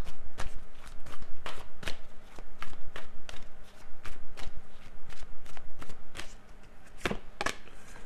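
A deck of tarot cards being shuffled by hand: quick, irregular card slaps and flicks, about three a second, thinning out near the end.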